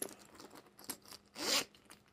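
Metal zipper on a handbag being pulled: a few light clicks, then one short zip about one and a half seconds in.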